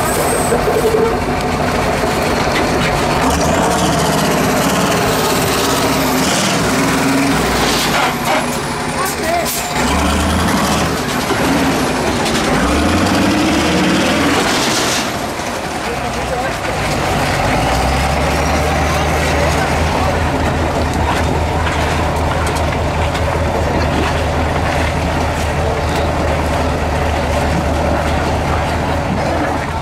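Heavy 6x6 MAN trial truck's diesel engine working hard under load, its pitch rising and falling as it revs, then settling into a steady low drone for the last third. A short sharp hiss sounds about halfway through.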